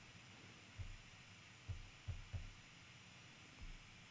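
Near silence: faint room tone with a few soft, low thumps scattered through it.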